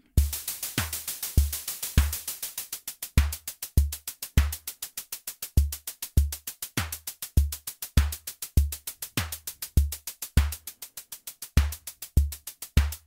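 Modular synth drum beat clocked by a Pamela's Pro Workout: a fast, even stream of hi-hat ticks over an unevenly spaced Euclidean kick and snare pattern. It starts just after the module's Start/Stop button is pressed.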